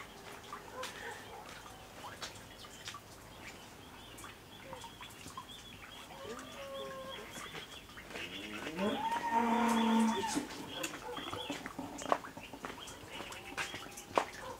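A cow moos once, a single held call of about a second and a half roughly two-thirds of the way through, over faint bird chirps. A sharp click follows near the end.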